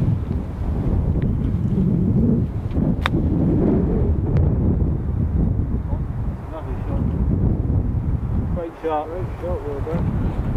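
Strong wind buffeting the microphone, with one sharp click about three seconds in: an iron striking the golf ball on a short chip shot.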